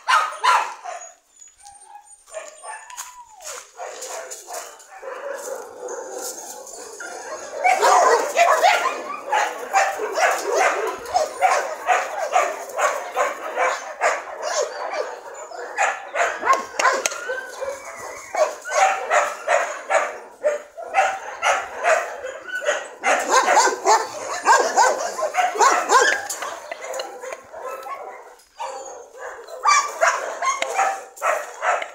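Dogs in a playing pack barking in quick, overlapping volleys. The barking comes in two long busy stretches, the first starting about a quarter of the way in, with quieter spells between.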